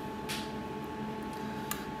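Quiet kitchen room tone with a faint steady hum, and the soft brief sound of a metal spoon scooping sauce from a stainless steel saucepan, once just after the start and again fainter near the end.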